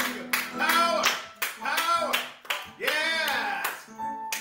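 A few people clapping their hands in a steady rhythm, in time with voices singing.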